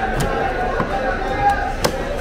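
A large broad-bladed knife chopping tuna on a wooden chopping block: several sharp chops, the loudest near the end, over background chatter.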